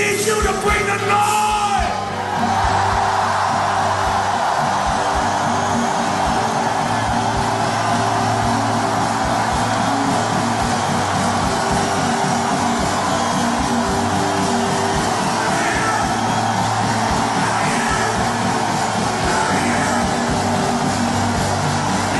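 Live rock band playing a steady groove with a regular beat, and a festival crowd cheering and clapping along. A shouted vocal at the start ends about two seconds in.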